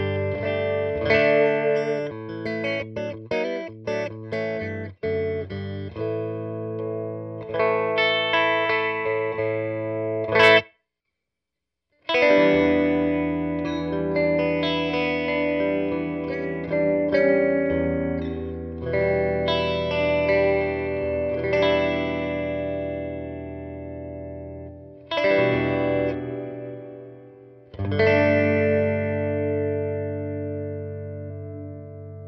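Electric guitar playing notes and chords, first dry through the BOSS RV-200 reverb pedal in bypass. After a short silence about eleven seconds in, it plays through the pedal's Room reverb algorithm, the notes ringing on in longer tails.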